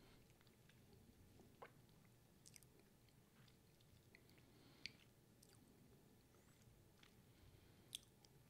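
Near silence: faint room tone with a few short, faint clicks scattered through it.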